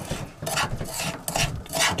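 Metal utensil scraping a gritty mix of sugar, potassium nitrate and melted crayon wax around a frying pan: a rasping scrape about twice a second.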